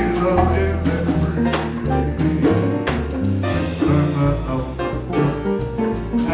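Live jazz combo of piano, double bass and drums playing an instrumental passage of a swing standard, with no vocal.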